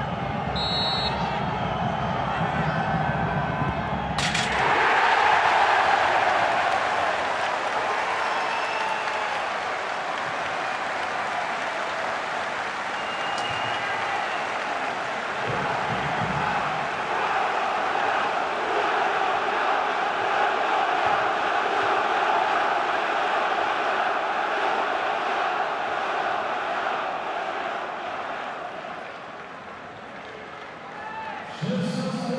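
Football stadium crowd cheering a penalty goal: the noise jumps suddenly about four seconds in and stays up, dropping near the end.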